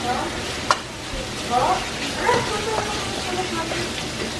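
Ground chicken sizzling as it sautés in a wok, stirred with a spatula, with a sharp clack of the spatula against the pan less than a second in.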